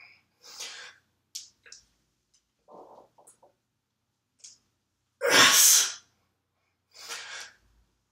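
A weightlifter's breathing through barbell back squat reps: a series of short, sharp breaths, with one loud, forceful exhale a little past the middle as he drives up out of a squat.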